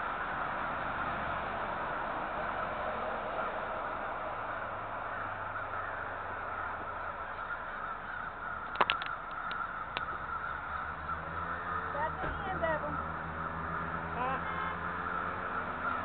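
Din of a huge flock of birds, thousands of them, calling all at once in a steady dense chatter. A few sharp clicks come about nine seconds in, and a low steady hum joins in the last few seconds.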